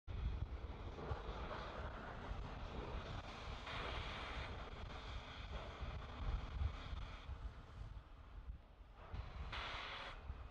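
Launch-pad ambience: wind buffeting the microphone with a steady low rumble, and a hiss that swells briefly about four seconds in and again near the end.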